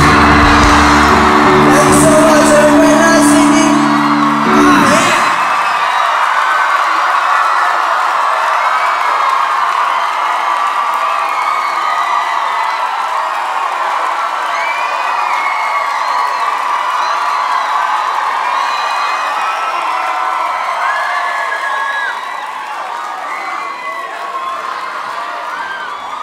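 A live indie pop band's guitars and drums hold a final chord that cuts off about five seconds in, then a club audience cheers and shouts, easing slightly near the end.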